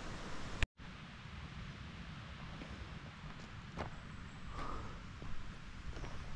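Faint outdoor ambience: a steady low rumble of wind on the microphone with light rustling. A sharp click is followed by a split-second dropout to dead silence a little under a second in.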